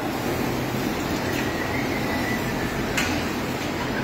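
Steady hum and hiss of dairy milking-parlour machinery running, with a faint thin whistle partway through and a single sharp click about three seconds in.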